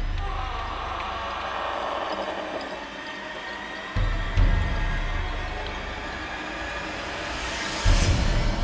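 Horror film score: a sustained eerie tone that fades over the first few seconds, and deep booming hits, two close together about four seconds in and another at the very end.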